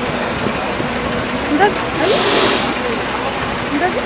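Several people talking over one another beside a bus, with its engine running underneath. A brief hiss comes about two seconds in.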